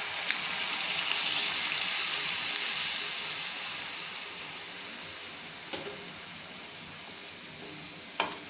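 Milk poured into a hot oiled pan of frying potatoes, hissing and sizzling as it hits the hot fat. The hiss swells over the first couple of seconds, then slowly dies away as the milk heats up and comes to a bubbling boil.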